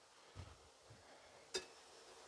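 Near silence, with a faint soft sound about half a second in and one short click about one and a half seconds in. The click is metal kitchen tongs touching a glass bowl.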